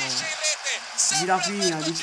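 Speech: a man's voice giving Italian football commentary, with a short hiss-like burst about a second in.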